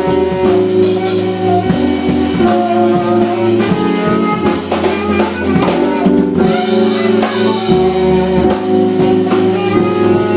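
Live jazz trio of alto saxophone, keyboards and drum kit playing; the keyboards hold chords over a low bass line while the drums keep time.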